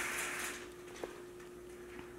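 Quiet room with a faint steady hum and a single sharp click about a second in.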